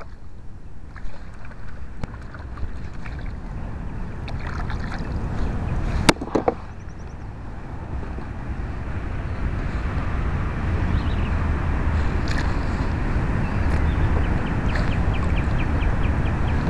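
Kayak on open water: wind rumbling on the microphone and water moving around the hull and paddle, getting louder in the second half, with a few small handling knocks and one sharp click about six seconds in.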